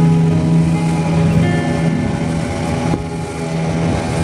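Steady low drone of a motor boat's engine, with background acoustic guitar music over it.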